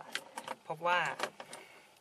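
A man speaking a short phrase in Thai, with several light clicks in the first half second.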